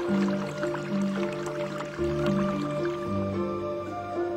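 Soft background music of slow held notes, with many quick drips of water falling over it that thin out about three seconds in.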